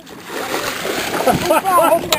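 A silver salmon thrashing and splashing in a landing net at the water's surface.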